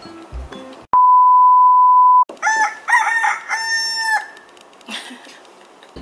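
A loud, steady electronic beep lasting over a second, followed by a rooster crowing in three parts, the last drawn out, an edited-in sound effect marking the jump to the next morning.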